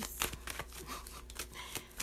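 A tarot deck being shuffled by hand: a quick, irregular run of papery card clicks and rustles.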